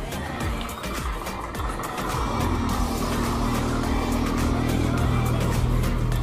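A truck's engine drone growing louder from about two seconds in as it comes by, over background music.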